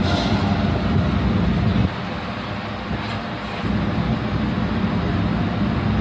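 New Jersey Transit bilevel commuter train standing at the platform, its diesel locomotive and on-board equipment running with a steady low hum. The sound dips for a couple of seconds about two seconds in, then comes back up.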